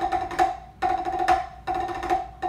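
Drumsticks playing short double-stroke rolls on a rubber-topped wooden practice pad: three quick runs of rapid strokes, each about half a second, with the pad giving off a steady pitched ring.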